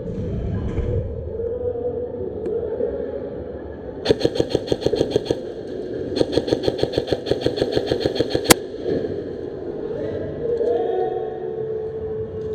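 Airsoft electric rifle (an M4-style AEG) firing two rapid full-auto bursts about four and six seconds in, the second longer, followed by a single sharp crack.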